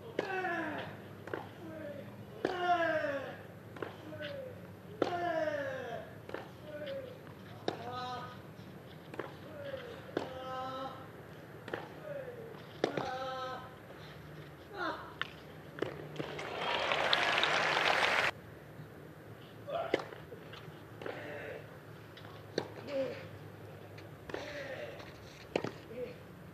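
A clay-court tennis rally: racquet strikes on the ball, many of them paired with a player's grunt that slides down in pitch, coming every one to two and a half seconds. About sixteen seconds in, a two-second burst of crowd noise cuts off suddenly, and then more strikes and grunts follow.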